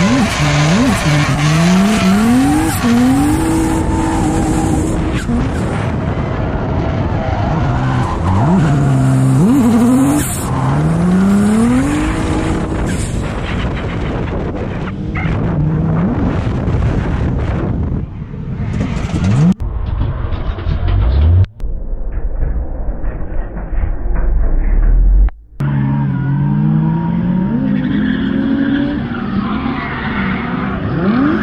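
Drift car's engine revving hard during a slide, its pitch climbing again and again and holding near the top of the revs, with tyres squealing, heard from inside the car. The sound drops out briefly twice in the second half.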